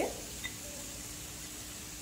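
Faint, steady sizzling from a pan of onion mixture cooking over a low gas flame.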